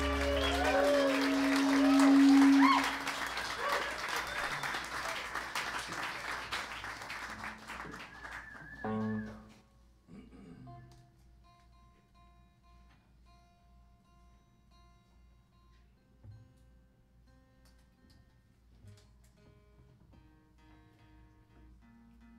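A rock band's final chord rings for about two and a half seconds while the audience claps, cheers and whoops. The applause dies away over the next several seconds, and after about ten seconds only faint, held electric guitar notes remain.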